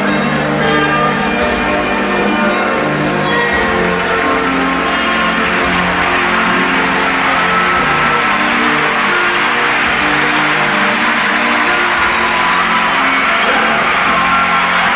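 Live concert music with many overlapping, sustained bell-like chiming tones. About five seconds in, a rising wash of noise builds beneath them, typical of crowd cheering.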